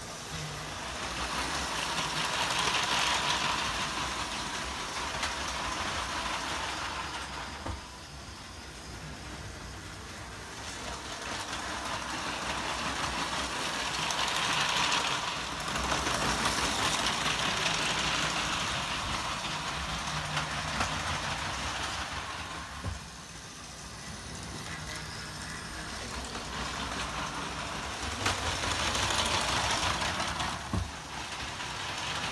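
Motorised LEGO train running on plastic track: a whirring motor and rattling wheels that grow louder and fade three times as the train passes close by and moves away.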